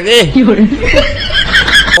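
A man's loud voice into a microphone, shifting about a second in to high-pitched snickering laughter.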